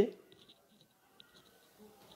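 A man's voice trails off at the very start, followed by near silence with a few faint, tiny clicks.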